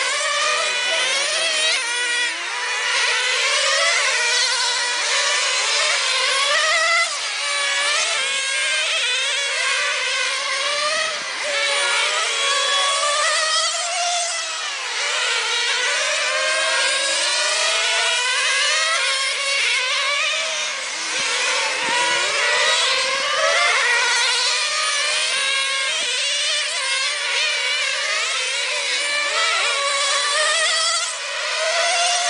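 Several radio-controlled model race cars running laps together, their motors whining up and down in pitch as they accelerate and slow for the corners, the overlapping pitches shifting constantly.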